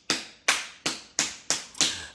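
A person's hand claps, six sharp claps at an even pace of about three a second.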